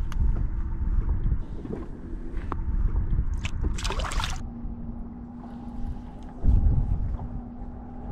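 A released smallmouth bass splashing at the surface as it kicks free from the hand, about four seconds in, over low wind rumble on the microphone and water against the boat. A faint steady hum runs through the second half.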